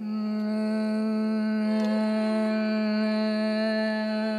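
Carnatic vocal music: a singer holds one long, steady note on a single pitch, with no ornament or wavering.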